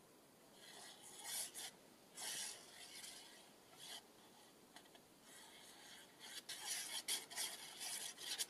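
Faint scratchy rubbing of a fine-tipped glue bottle's nozzle dragged over card stock as glue is laid on, in a string of short strokes that come closer together in the second half.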